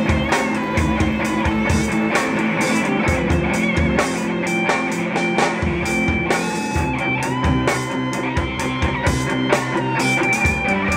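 Rock band playing live: electric guitar over a drum kit keeping a steady beat, with held notes that step up and down in pitch.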